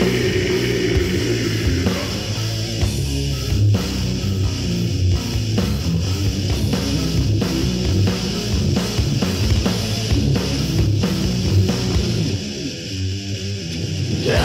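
Death metal recording: distorted electric guitars and bass playing a riff over a drum kit, with no vocals in this passage. The music thins and drops in level for a moment near the end.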